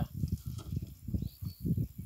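Wind buffeting the microphone: irregular low rumbling gusts.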